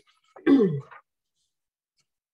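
A woman with a cold clearing her throat once, a short rasp falling in pitch, lasting about half a second.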